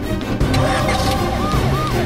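Police vehicle siren switching on about one and a half seconds in, a fast, repeating rise and fall, over background music.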